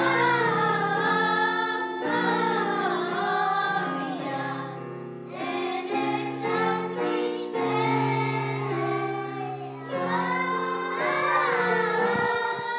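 Children's choir singing a slow melody with long held notes.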